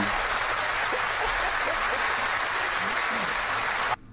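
Studio audience applauding steadily, cutting off suddenly at the very end.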